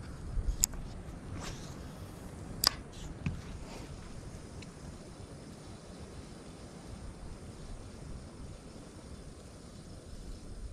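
A few sharp clicks and taps from handling a spinning rod and reel, the loudest a little under three seconds in, over a steady low wind rumble on the microphone.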